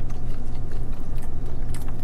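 Faint chewing and handling of food, over a steady low background hum.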